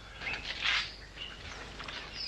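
Faint outdoor ambience: a soft hiss about half a second in, then a few short, high chirps and faint ticks.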